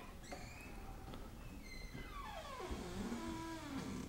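Faint layered sound-design tones: thin steady pitches early on, then several tones together sliding slowly downward in pitch through the second half, over a low steady hum.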